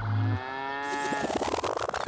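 A cow mooing: one long, drawn-out call that falls slightly in pitch and turns rougher toward its end.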